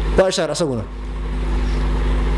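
A man's voice in a short spoken phrase, then a steady low rumble with a faint hum underneath that continues and slowly grows a little louder.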